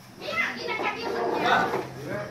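Overlapping chatter from a group of adults and children, with high children's voices among them; no single speaker stands out.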